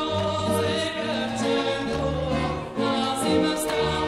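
Recording of a traditional Bulgarian folk song: singing over an ensemble accompaniment with a moving bass line and a few sharp percussive strikes.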